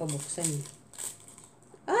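Packaging being handled with a short crinkling, tearing rustle about a second in, as the tight package tears.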